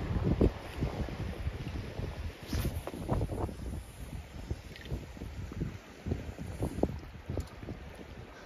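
Wind buffeting the microphone in uneven gusts, with a few faint knocks about three seconds in.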